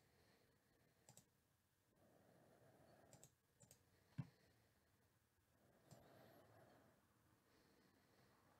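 Near silence with a few faint, sharp clicks, the loudest about four seconds in.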